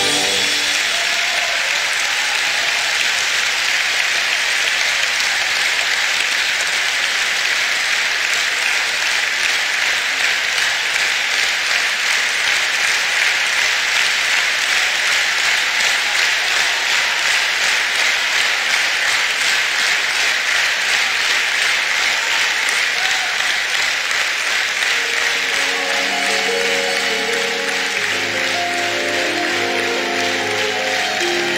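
Concert audience applauding in a large hall as the music stops. Instrumental music starts again under the applause about 25 seconds in.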